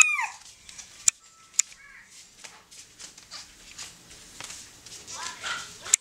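A toddler's high-pitched squeal trailing off with a falling pitch at the very start, then scattered light clicks and taps, and a brief, quieter wavering vocal sound from the toddler about five seconds in.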